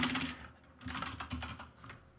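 Quiet typing on a computer keyboard, a quick run of keystrokes with a brief pause near the start, as a search word is entered.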